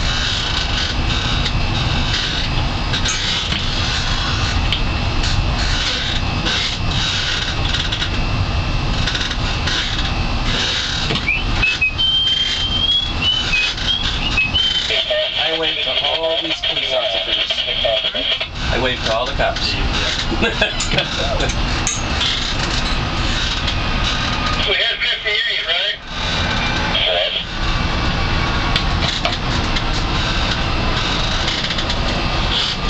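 Steady engine and wind noise aboard a moving harbor tour boat, with indistinct voices in the background.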